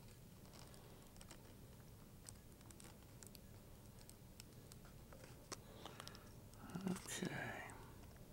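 Faint, scattered small clicks and light handling noise from hands fitting a foam vertical fin into a foam model-airplane fuselage, over quiet room tone. A brief faint voice sound comes near the end.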